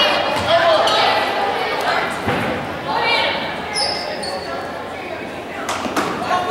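Voices and chatter echoing through a large gymnasium, with a basketball bouncing on the hardwood court.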